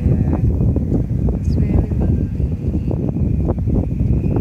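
Wind buffeting the phone's microphone, a loud, gusty rumble.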